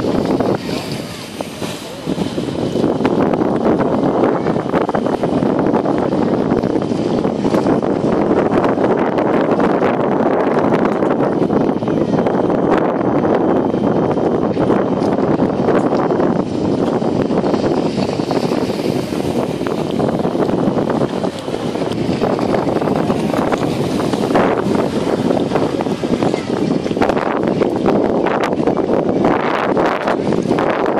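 Wind buffeting the microphone in a continuous rush, with indistinct voices mixed in.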